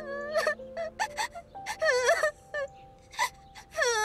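A young girl crying, wailing in bouts with short catching breaths between them, over soft sustained background music.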